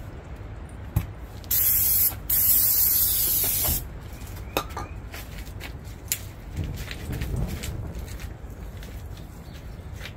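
Aerosol can of starting fluid sprayed into the gap between a tire's bead and its rim in two hissing bursts: a short one, then after a brief break a longer one of about a second and a half. A few light clicks follow.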